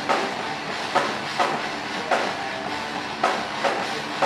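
Drum kit played fast and without a break: a dense wash of drum and cymbal strokes, with harder accented hits about twice a second.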